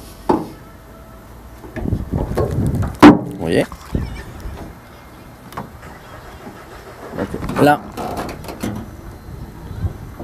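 Car bonnet being released at its safety catch and lifted open: a sharp click about three seconds in, with a second softer one just after, amid low rumbling handling noise.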